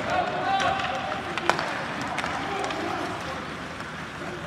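Ice hockey rink sound: spectators calling out in drawn-out voices over a steady background of rink noise, with one sharp crack about one and a half seconds in.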